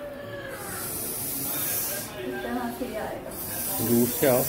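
A high hiss that comes and goes in stretches of about a second and a half, with faint voices in the background.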